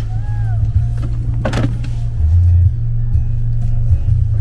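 Music with a heavy bass line playing inside a car while driving, over the low rumble of the car itself.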